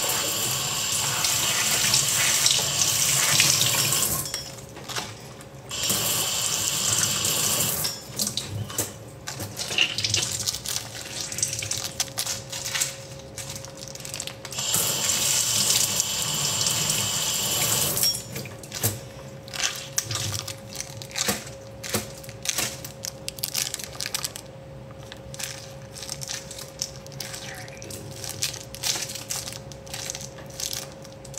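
Kitchen tap running into a sink in three bursts as it is turned on and off to rinse a baby's teething toy, with small knocks and clatter of the toy being handled between the bursts.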